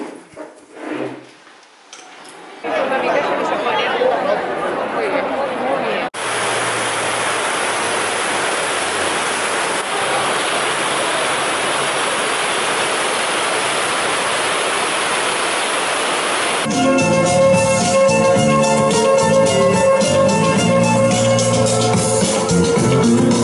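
Brief indoor talk and clatter, then a steady even rush of water spray from a large illuminated public fountain over a crowd. Near the end, a street musician starts playing amplified guitar music with a steady beat.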